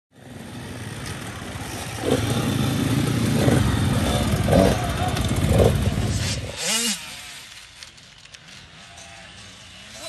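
Small two-stroke youth motocross bikes running and revving, loud for the first six and a half seconds. Then much quieter, with one bike's engine rising and falling in pitch.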